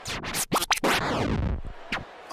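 Short electronic transition sting: scratch-like whooshes and sharp hits, then a long falling sweep. It marks the change to the next entry of the countdown.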